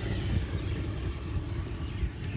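Motorbike engine running at low speed, a steady low rumble.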